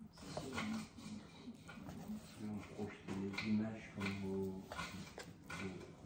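Indistinct voices at a low level, with a few light knocks.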